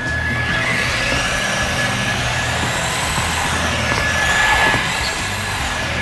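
Electric RC buggy, a Traxxas Bandit, driving hard on a concrete half-pipe: a steady rushing whir of motor and tyres that swells and then eases through the middle.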